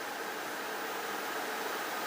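Steady, even hiss of an open phone-in line carrying no speech yet.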